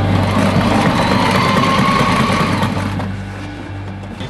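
Sewing machine running, stitching through layers of webbing and sprayhood fabric for about three seconds, then stopping.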